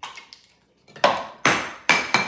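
Plastic organ pieces from a toy anatomy model clinking against a clear glass bowl as they are put in: three sharp clinks about a second in, roughly half a second apart.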